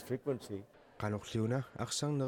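A man talking, with a short pause about a second in.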